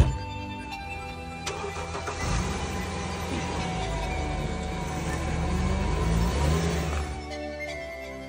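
Mercedes-Benz GLK SUV engine starting about a second and a half in, then running with some revving for several seconds before fading near the end, under steady background music. A sharp click is heard right at the start.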